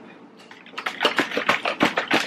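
Lemonade mix of lemon juice, maple syrup, cayenne and water sloshing in a plastic gallon jug that is being shaken hard by hand. It comes as a quick, irregular run of splashing knocks that starts just under a second in.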